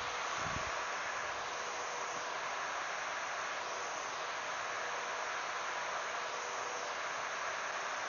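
Steady hiss with a faint, steady tone, as the laser engraver's motorised Z table is driven slowly upward to bring it into focus. There is a small knock about half a second in.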